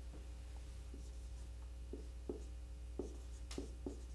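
Marker writing on a whiteboard: a string of faint, short strokes as letters are written, over a steady low hum.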